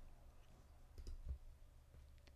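Near silence: room tone with a few faint clicks about a second in.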